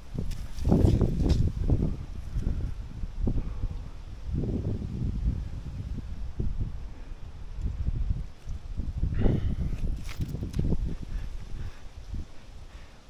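Irregular rubbing, scraping and knocking as a climber shifts his hands, feet and clothing against the rough bark of a sugar maple, close to a body-worn action camera.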